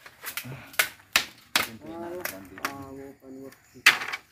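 Sharp wooden knocks of bamboo slats being struck and set into place while a split-bamboo lattice is woven, about five strikes at irregular spacing, the loudest near the end.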